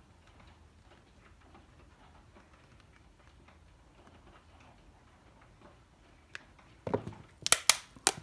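Faint handling of a vintage Rolex tapestry-lid watch box, then, about a second before the end, a few sharp clicks as its lid is opened. The box gives a slight click when opened.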